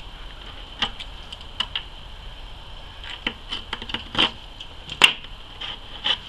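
Scattered light clicks and taps of small hand tools and a plastic bucket being handled on a tabletop, with the sharpest click about five seconds in.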